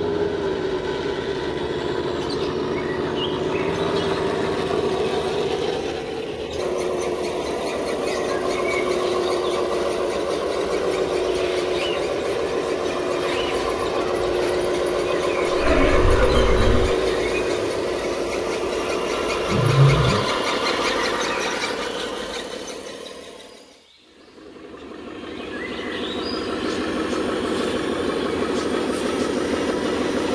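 Radio-controlled model trucks driving over sand: a steady whine from their small electric motors and gearboxes. There are two short low thumps about halfway through, and the sound dips briefly to quiet and returns about two-thirds of the way in.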